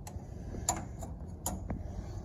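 About five light, sharp metal clicks and taps as a drift punch is worked into the hole in a John Deere Gator's shift-linkage bracket to pin it in neutral, over a steady low hum.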